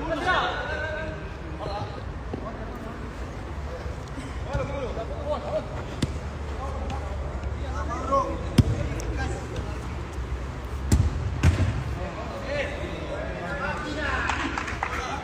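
A football being kicked: several sharp thuds, the loudest about eight and a half seconds in and two close together about eleven seconds in, over spectators' chatter and shouts.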